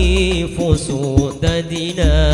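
Hadroh al-Banjari music: male voices singing a sholawat with a wavering melody over terbang frame drums. A deep drum boom sounds at the start, and sharp drum strokes fall through it.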